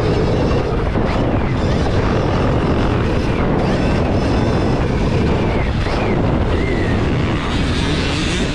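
Stark Varg electric motocross bike ridden at speed, heard from the rider's helmet camera: steady wind rumble on the microphone over the bike's running noise, with the electric motor's faint whine rising and falling in short glides as the throttle changes.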